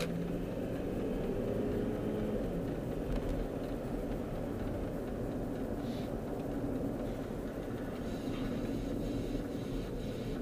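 Steady road and engine noise heard from inside a car's cabin while driving: a low, even drone of engine and tyres on the road.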